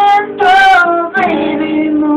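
A man singing an acoustic R&B ballad over a strummed acoustic guitar, holding long notes with a short hissed consonant about half a second in.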